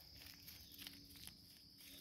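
Near silence, with a few faint footsteps on gravel.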